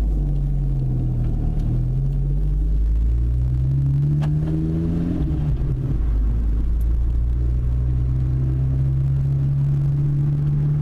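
Volkswagen GTI Mk6's 2.0-litre turbocharged four-cylinder heard from inside the cabin on a drive, over road rumble. The engine note climbs and drops with gear changes through the first half, falls about six seconds in, then holds steady. There is a single short click about four seconds in.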